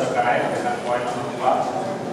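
A man speaking into a handheld microphone, his words indistinct.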